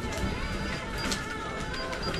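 Background music playing in a shop, with a receipt printer at the register running briefly.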